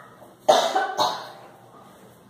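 A woman coughing twice, about half a second apart, the first cough the louder.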